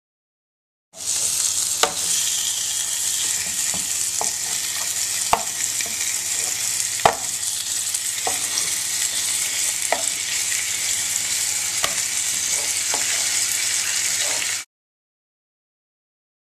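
Curry goat frying and sizzling in a pot, stirred with a utensil that knocks against the pan several times. The sizzle starts about a second in and cuts off suddenly near the end.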